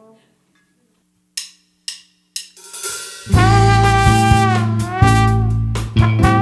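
A drumstick count-in of three sharp clicks about half a second apart, then a band comes in at about three seconds with drum kit and trombone holding long notes.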